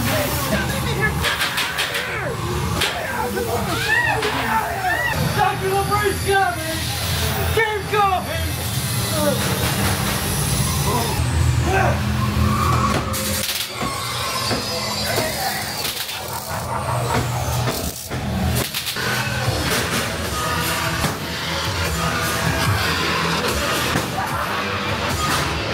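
Haunted-house soundtrack: a steady low industrial drone and music under wavering, wordless voices. In the second half comes a run of sharp bangs and clanks.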